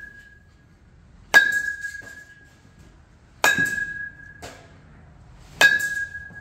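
A metal baseball bat hitting balls three times, about two seconds apart, each a sharp ping that rings on for about a second.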